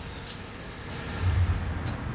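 Phone being handled and turned around by hand, giving a brief low rumble about a second in and a couple of faint clicks over the steady low background noise of a repair shop.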